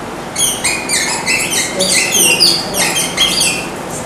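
Marker squeaking on a whiteboard as a word is written: a quick run of short, high squeaks, one per pen stroke. It starts a moment in and stops shortly before the end.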